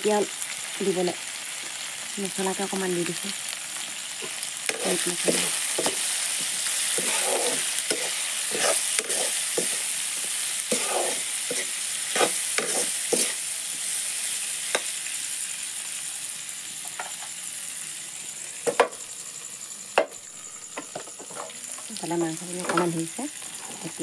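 Vegetables sizzling as they fry in an iron kadai, stirred and scraped with a metal spatula in short repeated strokes. Two sharp knocks of metal on the pan come a few seconds before the end.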